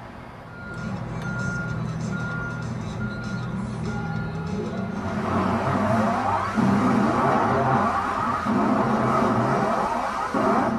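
A truck backing up: a reversing alarm beeps about every two-thirds of a second over a running engine. About halfway through, the beeping stops and a louder mix of voices takes over.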